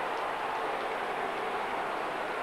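Football stadium crowd noise, a steady even roar with no rise or fall.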